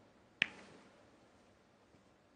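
Snooker balls: the cue ball strikes the pack of reds on the break-off with one sharp click about half a second in, followed by a brief rattle as the reds spread. A faint click comes near the end.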